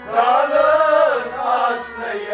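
A Kashmiri Sufi devotional song: a sung vocal line holding a long note that rises and falls, over a regular low drum beat.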